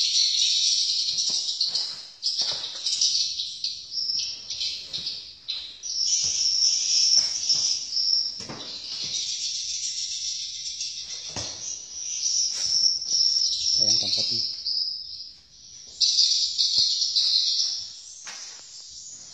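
Dense, continuous high-pitched twittering of a colony of swiftlets (burung walet), swelling and fading in loudness, with a short dip about 15 seconds in.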